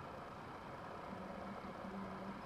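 Quiet room tone, with a faint steady low hum coming in about halfway through.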